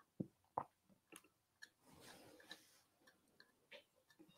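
Near silence with a few faint, scattered taps and clicks, the two clearest in the first second: a palette knife dabbing thick paint onto a canvas.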